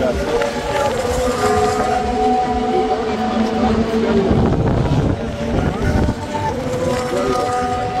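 Wind buffeting the microphone on a high open platform, with steady held tones underneath that shift in pitch a few times.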